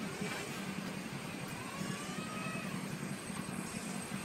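A steady, low engine hum, with a faint thin whine that rises and falls in the middle.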